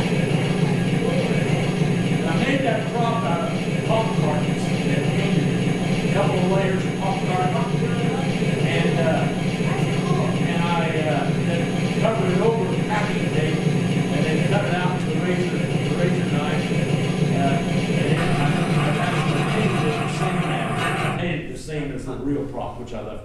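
Engine-sound simulator in an electric RC T-6 Texan model, playing a recorded aircraft engine through its speaker as a steady low drone. It stops about 21 seconds in.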